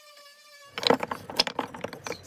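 A cordless Makita random orbital sander whining steadily, cut off about three-quarters of a second in. Then wooden offcuts clatter and knock together in irregular bursts as a hand rummages through a plastic crate of pine blocks.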